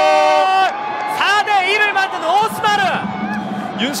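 A TV football commentator's long drawn-out shout as a goal goes in, held on one pitch, then breaking into excited, fast commentary.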